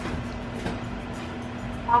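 A steady low hum over a faint even hiss, with no clear event in it.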